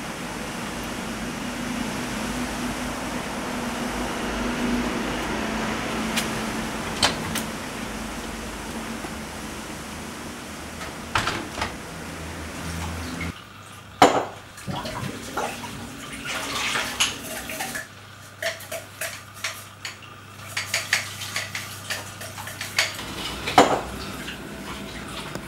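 For the first half a steady low hum with a few faint clicks. Then, from about halfway, dishes and cutlery being washed in a kitchen sink: repeated sharp clinks of crockery and utensils, with running water.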